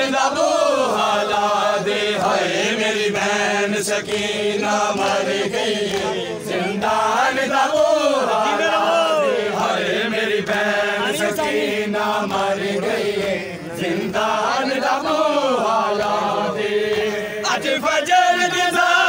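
Men's voices chanting a noha, a Shia lament, in a slow melody that rises and falls without a break, over a steady low hum.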